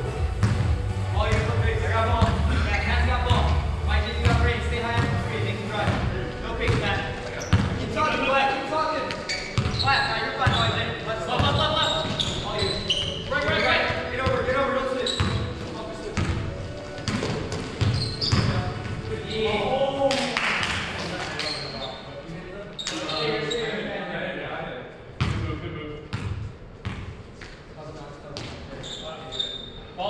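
Basketball bouncing repeatedly on a hardwood gym floor, with players' voices calling out over it.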